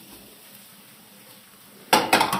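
Faint, steady sizzle of a thin crepe frying in the pan, then near the end a sharp clang as the spatula strikes the frying pan.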